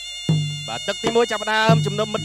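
Traditional Kun Khmer fight music strikes up about a quarter second in. A nasal, wavering reed pipe (sralai) plays a melody over drum beats.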